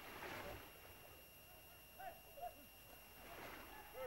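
Near silence: faint outdoor ambience with a few short chirping calls and two soft swells of hiss.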